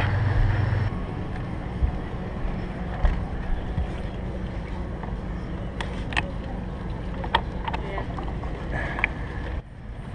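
A low steady hum cuts off about a second in. After it come a few light scattered clicks from a deck fill cap being unscrewed with a deck key, over a steady low rumble.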